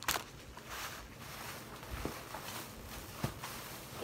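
Quiet rustling and handling of cellophane-wrapped craft packages and a plastic bag, with a sharp click right at the start and a couple of soft taps later on.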